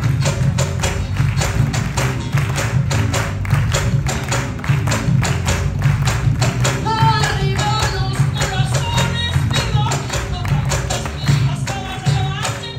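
A live band plays a Peruvian marinera: acoustic guitars and electric bass over a fast, steady percussion rhythm of sharp strokes. A voice comes in over the band about seven seconds in.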